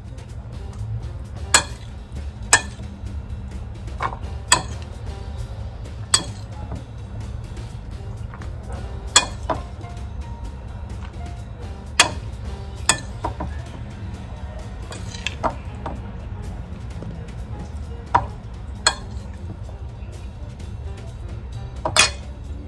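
A metal spoon clinking against a serving bowl and a plastic container as salad is spooned out, sharp single clinks every second or two at irregular intervals, over a low steady hum.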